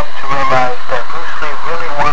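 A person's voice speaking continuously.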